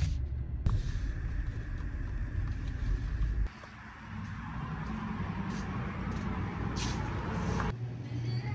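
Steady rumble of a car driving, heard from inside the cabin, which cuts off abruptly about three and a half seconds in. Quieter outdoor traffic noise follows, with a few faint clicks.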